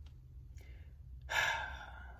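A man's heavy breath, a sigh, about a second and a half in and lasting about half a second, with a fainter breath before it.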